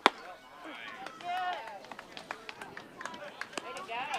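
A baseball bat hitting a pitched ball: one sharp crack, followed by players and spectators shouting.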